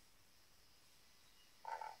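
Near silence: quiet room tone, then a faint short murmur of a voice near the end, just before speech resumes.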